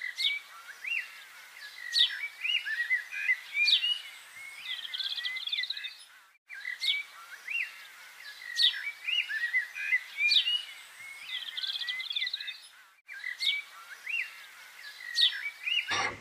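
Birds chirping and trilling in a short recording that repeats about every six and a half seconds, with a brief cut to silence between repeats.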